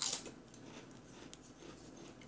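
A wavy potato chip being bitten with a sharp crunch, followed by quieter crunching clicks as it is chewed.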